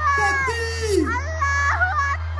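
Vocals-only nasheed singing over the concert sound system: pitched voices repeat a short phrase with falling slides over a steady low hummed drone.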